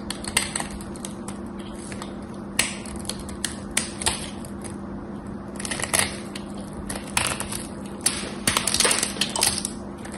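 Craft-knife blade cutting and scraping into a dried bar of soap: crisp, irregular crackling as flakes break away, with a dense run of cuts near the end.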